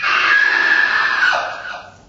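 A man screaming loudly into a stage microphone. The scream cuts in abruptly, is harsh and rough, and lasts almost two seconds before fading.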